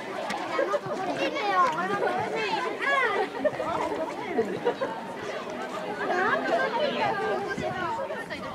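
Several high-pitched children's voices shouting and calling out over one another, with overlapping chatter and no clear words.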